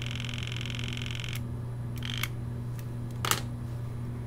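Motorised pipette controller whirring steadily as it dispenses culture from a serological pipette into a plastic cuvette; it stops about one and a half seconds in. A few light plastic clicks follow as the cuvette is handled.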